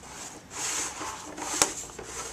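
Wooden lid of a wooden box being slid open along its grooves: a short scraping rub about half a second in, then a sharp wooden click near the end.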